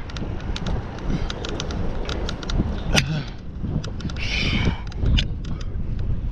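Wind buffeting the microphone of a bicycle-mounted camera while riding, a low rumble with scattered sharp clicks and knocks. A short hissing burst comes about four and a half seconds in.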